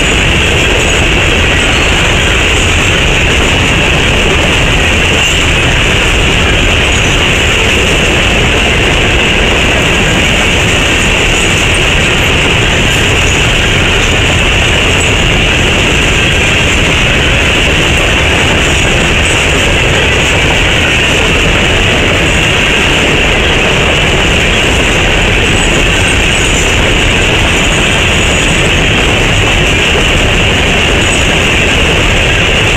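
Loaded coal hopper cars of a unit coal train rolling past close by: a loud, steady roar of steel wheels on the rails that doesn't let up.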